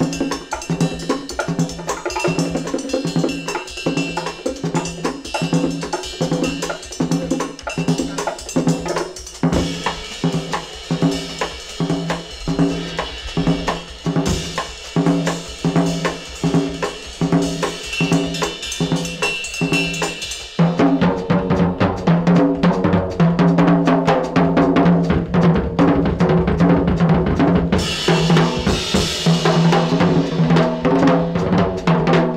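Live small-group jazz: drums and percussion play over a low figure repeating about one and a half times a second. About two-thirds of the way through, the music becomes suddenly louder and fuller.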